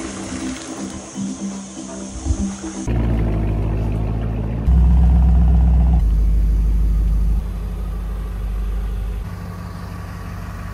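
Music for the first three seconds, then the supercharged V8 of a Range Rover Sport SVR running as the SUV creeps forward through a doorway, a deep steady rumble that gets louder for a second or so just before the midpoint.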